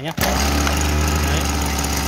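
Small two-stroke Maruyama brush-cutter engine running at a steady speed. It comes in abruptly about a quarter of a second in.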